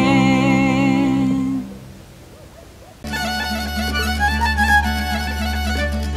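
The last held note of a Romanian Christmas carol (colind), a woman's voice with vibrato over a folk band of fiddle, double bass and guitar, dies away about a second and a half in. After a short pause, folk fiddle music starts suddenly about three seconds in, over a steady low drone.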